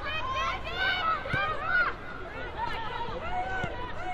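Several voices calling out and chattering over one another above a low stadium crowd rumble, with two dull thuds, about a second in and near the end.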